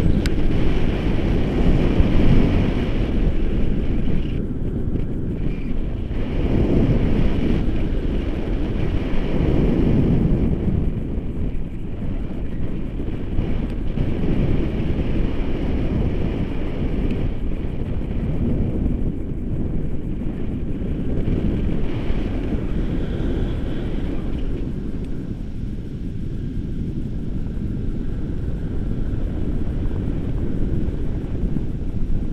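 Airflow from a tandem paraglider in flight buffeting the action camera's microphone: a loud low rushing that swells and eases every few seconds.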